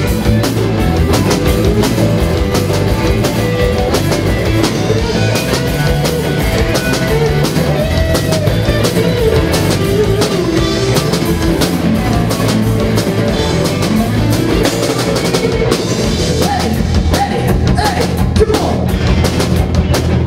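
Live rock band playing an instrumental break: a lead electric guitar solo with bent, gliding notes over a driving drum kit.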